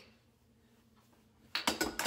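Quiet room tone, then about one and a half seconds in a sudden clatter of small objects knocked over and falling on a bathroom counter, a quick run of hard clicks and knocks.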